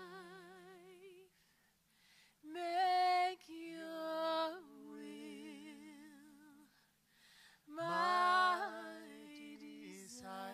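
A woman singing unaccompanied into a microphone: slow phrases of long, held notes with vibrato, separated by short pauses.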